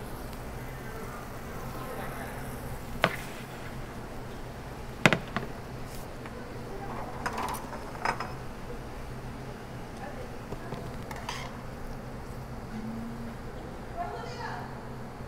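Metal tongs clinking against a stainless steel sauté pan while fresh pasta is tossed in it: a handful of sharp clinks spread out, the loudest about five seconds in, over a steady low hum.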